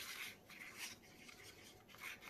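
Faint, irregular scraping of a wooden stir stick against the inside of a paper cup, stirring gold pigment into liquid resin.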